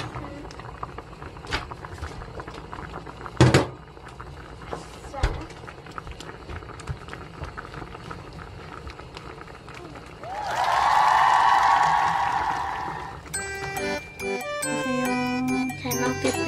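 Small clicks and knocks of a wooden spatula working in a pot as beaten egg is stirred into simmering dumpling soup, with a sharper knock about three and a half seconds in. About ten seconds in comes a loud held pitched sound lasting about three seconds, and then background music with a steady beat.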